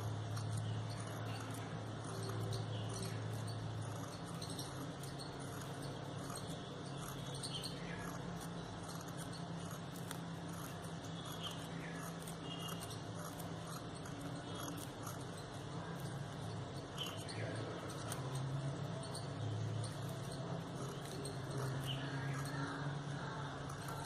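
Scissors making many small snips into a strip of crepe paper, cutting a fine fringe along its edge, over a steady low hum.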